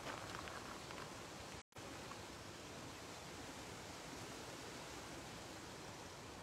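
Steady soft wash of lake water lapping among shoreline rocks, with a few faint small splashes in the first second; the sound cuts out completely for an instant about a second and a half in.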